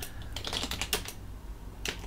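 Computer keyboard keystrokes: a quick run of key presses in the first second and a single one near the end, as a password is typed at a sudo prompt and entered.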